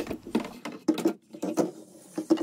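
A rapid, irregular run of light clicks and taps, about a dozen in two seconds: small objects being handled and set down in a small room.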